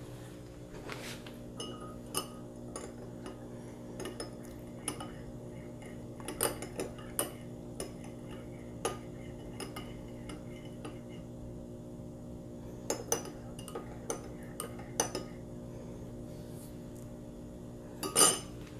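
Metal teaspoon stirring tea in a ceramic teacup, clinking against the cup at irregular moments, over a steady low hum.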